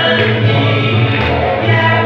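A man singing into a microphone over loud amplified backing music with a strong, steady bass.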